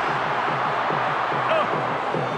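Large stadium crowd making a steady, loud roar of many voices during a rugby league match, with a brief commentator's "Oh" near the end.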